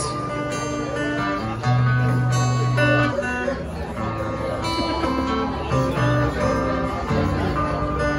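Acoustic guitar strumming chords in a steady rhythm, an instrumental passage with no singing.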